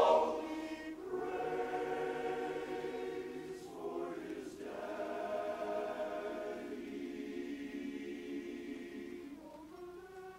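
Men's chorus singing a cappella in close harmony: a loud chord cuts off at the start, then softer held chords follow, with a brief break about four seconds in, and the singing fades near the end.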